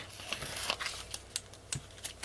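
Paper washi sticker sheet rustling and crinkling as it is handled, with a few faint ticks.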